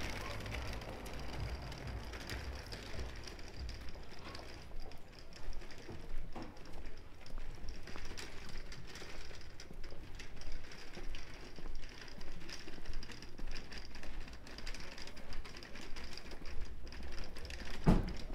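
Small plastic wheels of a shopping trolley rattling over cobblestones: a fast, irregular clatter of small clicks that grows denser a few seconds in.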